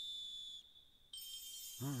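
A high, steady whistle-like tone from the anime's soundtrack, playing quietly, holds for about a second and then gives way to a fainter high tone. A woman laughs briefly near the end.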